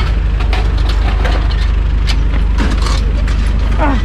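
Metal wheel clamps clicking and clanking as they are handled and fitted, a quick run of sharp irregular clicks over a steady low engine hum.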